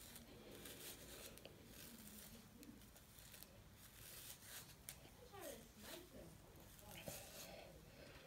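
Faint, repeated scratchy strokes of a bristle hairbrush dragged through short, gelled natural hair.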